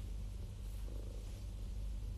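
Domestic cat purring with a low, steady rumble while being stroked.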